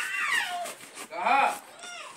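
A boy imitating a cat, giving two meow-like calls: one falling in pitch at the start, then an arching one about a second later.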